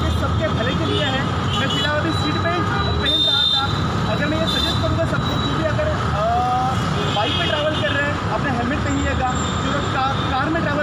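Road traffic running with many people talking indistinctly, a steady busy-street din.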